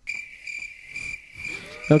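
A crickets sound effect played on a podcast soundboard: steady, repeated cricket chirping, the stock gag signalling awkward silence after a joke that fell flat.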